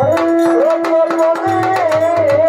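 Live Bengali folk music: a bowed violin plays a sliding melody over a held harmonium note. Low hand-drum strokes and quick jingling percussion keep the rhythm.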